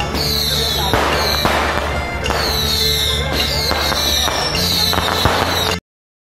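Firecrackers going off in a continuous crackling run, with repeated falling high whistles and sharp cracks, over steady procession music; it all cuts off suddenly near the end.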